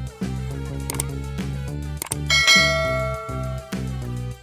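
Background music with a steady repeating beat and bass line. About two seconds in, a click and then a bright bell-like ding that rings out for over a second, the chime of a subscribe-button animation.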